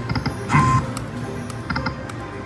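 Video slot machine spinning its reels: electronic chimes and tick-like reel-stop clicks over the game's music, with one loud chime about half a second in.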